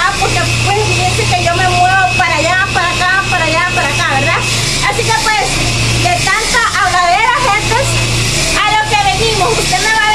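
A woman talking, over a steady low hum, with a faint high whine in the first four seconds.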